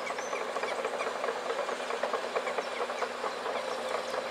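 Outdoor worksite ambience: a steady hiss with a low hum from distant machinery, and scattered faint bird chirps.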